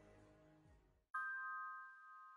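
Soft background music fades out, then about a second in a single chime sounds, its bright tone ringing on and slowly dying away.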